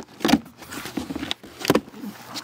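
Packing tape ripped off a cardboard box and the flaps pulled open: a few sharp crackling rips and rustles, loudest about a quarter second in and again near the end.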